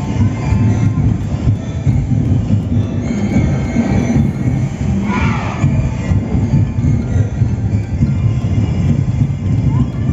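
Loud outdoor parade sound: music with a heavy low rumble, mixed with crowd voices. A voice calls out about five seconds in.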